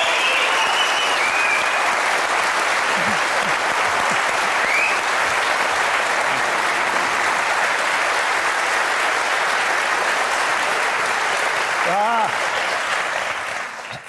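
Studio audience applauding, a steady mass of clapping that dies away near the end.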